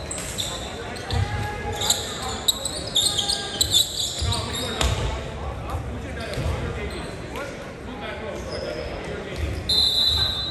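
Echoing gym sound during a volleyball match: a volleyball thudding several times, short high squeaks of athletic shoes on the hardwood court, and players' voices in the background.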